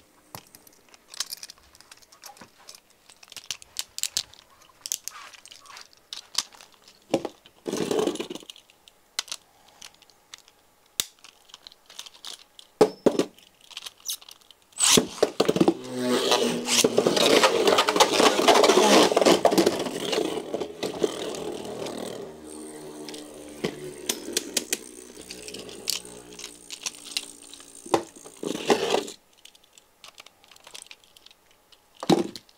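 A Beyblade Burst top spinning on the plastic floor of a stadium, its tip whirring with scattered light clicks. About halfway through it turns much louder and rougher for several seconds. It then settles to a quieter steady hum and stops suddenly about a second before the end.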